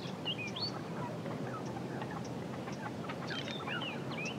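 Birds chirping, many short high calls scattered throughout, over a steady background hush of outdoor ambience.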